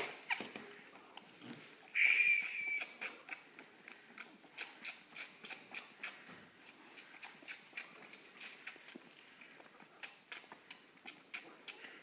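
Young lamb sucking milk from a bottle teat: a steady run of short wet sucking clicks, about three a second. A brief squeak comes about two seconds in.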